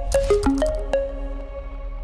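Short electronic logo sting: a quick run of five or so short pitched notes, each starting with a click, in the first second, settling into one held note that rings and slowly fades over a steady deep bass.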